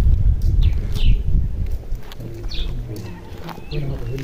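Open-air rural ambience on a rooftop: a low rumble on the microphone through the first half, a few short high bird chirps, and faint voices from about halfway.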